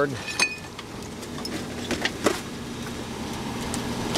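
Rear-loading garbage truck's engine running with a steady low hum, with a few sharp knocks and clatters from the debris being loaded; the loudest knock comes a little past two seconds in.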